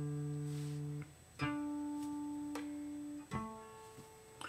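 Clean electric guitar played through a Two Notes Torpedo Cab M+ cab simulator, single notes plucked and left to ring while the guitar is checked against the tuner. One note rings and stops about a second in, a second is plucked and fades over about two seconds, and a third is plucked near the end.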